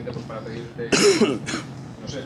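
A person coughing to clear the throat: one loud cough about a second in, then a second, shorter one.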